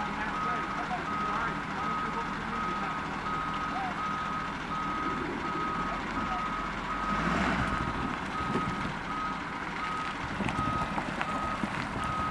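Tow truck's reversing alarm beeping steadily, about two beeps a second, over the truck's running engine. The engine noise swells for a moment about seven seconds in.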